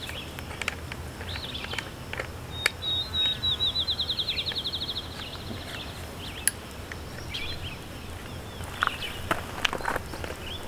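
A songbird sings a fast trill of evenly spaced high notes lasting nearly two seconds and dropping slightly in pitch, with a few other short chirps around it. A few light, sharp clicks come in between.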